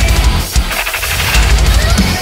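Industrial metal remix track with heavy downtuned guitars and pounding bass drums. About half a second in, the low end drops out briefly under a noisy effect, and the full band crashes back in a little past the middle.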